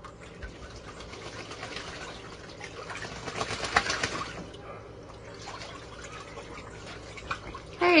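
A duck splashing as it bathes in a shallow plastic kiddie pool, the water sloshing and spraying in quick irregular bursts. The splashing builds to its loudest about three and a half to four seconds in, then eases off.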